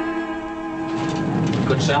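Orchestral score with held string chords that gives way about a second in to a noisy rumble with some clatter, and a man's voice begins near the end.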